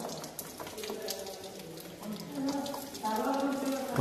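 A faint person's voice in the background, with a few light clicks.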